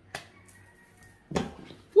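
A sharp snap of a tarot card flicked in the hand just after the start, with a second shorter rustle-like burst about a second later, then a man's exclaimed "Woo!" at the very end.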